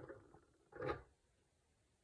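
Faint metal-on-metal click and scrape as a reloading die in its Hornady Lock-N-Load bushing is twisted free and lifted out of the conversion adapter on a single-stage press. There are two brief sounds, one at the start and one just under a second in.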